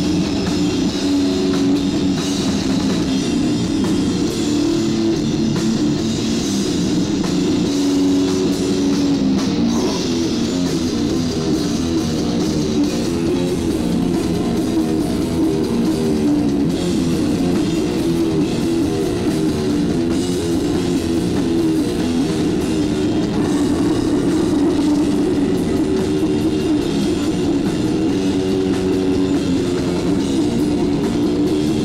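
Death/doom metal band playing live: heavily distorted guitar, bass guitar and drum kit with cymbals in a steady, dense wall of sound.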